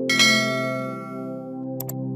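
A bright bell chime sound effect rings out just after the start and fades away over about a second and a half, over steady ambient synthesizer background music. Two quick clicks near the end.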